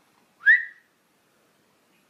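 A person's single short whistle, rising in pitch and then held for a moment, to call a small dog. The dog is hard of hearing.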